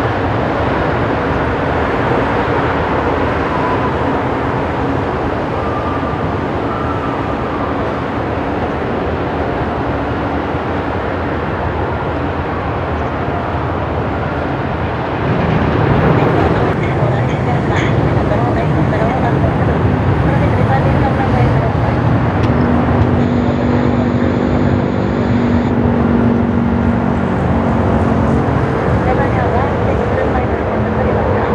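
Jet airliner engines running at climb power as twin-engine airliners depart, a steady rumbling roar. About halfway through, the sound steps up and shifts to another departing jet, with some steady engine tones showing in it.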